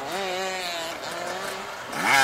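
An enduro motorcycle's engine running under throttle with a steady note that wavers slightly in pitch.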